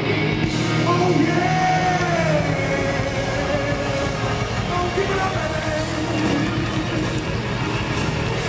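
Live rock band playing, with electric guitars holding long, bending notes over the band.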